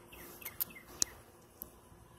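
Faint bird chirps: short, falling notes repeated several times in the first second, with a few sharp clicks.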